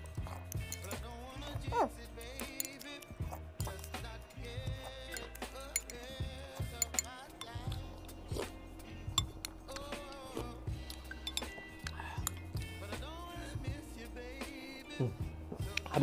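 Background music with a steady bass beat, with light clinks of a spoon against a bowl of noodle soup as it is eaten.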